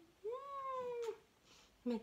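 A young baby cooing: one drawn-out high-pitched coo that rises and then falls, lasting about a second.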